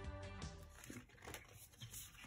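Background music that stops about half a second in, followed by faint rustling and a few soft ticks of stiff paper being folded and handled.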